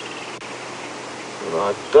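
Steady outdoor background hiss with the last notes of a bird's trill at the very start. A man's voice begins speaking near the end.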